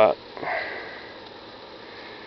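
A person's quick sniff just after a short spoken word, then a faint steady background hiss.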